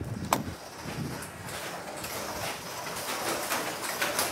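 The trailer's side door opens with a sharp metal click about a third of a second in, followed by a run of light knocks and shuffling as someone climbs up into the trailer.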